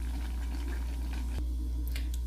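Thick condensed-milk and cream filling being stirred and scraped with a silicone spatula in a steel saucepan, giving soft squelching, over a steady low hum. A single sharp click comes about one and a half seconds in.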